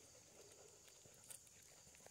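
Near silence: faint outdoor ambience with a couple of soft clicks a little past the middle.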